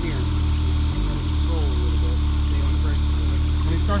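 Side-by-side UTV engine running steadily at low revs as the machine crawls down a rock drop, a constant low hum with a few steady higher tones over it.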